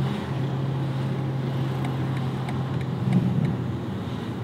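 BMW M4 G82's twin-turbo straight-six, heard from inside the cabin, cruising at low revs with a steady low drone that shifts slightly near the end. The car has an aftermarket exhaust valve control fitted.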